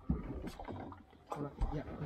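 Brief talk and a short "yeah" from men on the boat, over a low, steady rumble.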